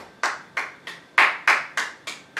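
Flamenco palmas: a man's hand clapping in a steady rhythm, about three sharp claps a second, loudest in the middle.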